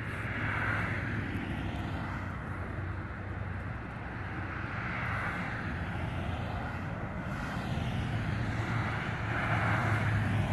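Traffic passing on a nearby road: engine and tyre noise that swells and fades about three times, over a steady low hum.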